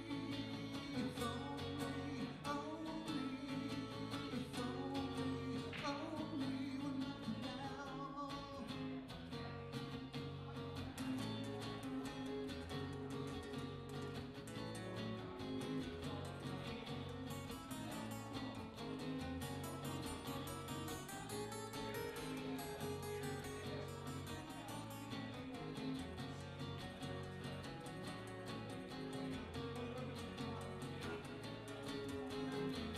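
Two acoustic guitars playing a song together live, with picked notes over steady chords.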